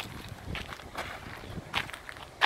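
Footsteps crunching on gravel as a person walks up to a plastic wheelie bin. Near the end comes a louder single clack, as the bin's hinged plastic lid is flipped open.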